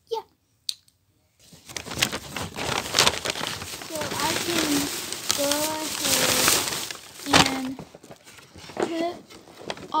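Paper shopping bag and a shiny plastic bag being handled and rustled, crinkling and crackling with a few sharper crackles, starting about a second and a half in.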